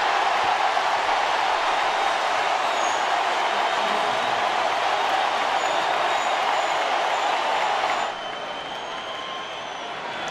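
Large stadium crowd cheering and applauding a strikeout, steady and loud, dropping abruptly to a lower crowd din about eight seconds in.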